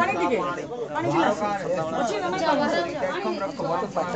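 Several people talking at once, their voices overlapping in a steady chatter.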